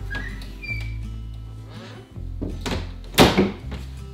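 A pair of panelled closet doors being shut: two knocks about half a second apart, the second the louder, over background music with low sustained notes.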